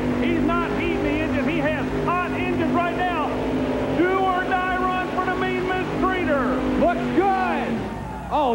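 Multi-engine modified pulling tractor running flat out under load as it pulls the sled, a steady held engine note that falls away near the end as the throttle comes off.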